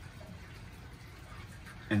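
Faint steady background hiss with no distinct sounds, in a pause between words; speech resumes at the very end.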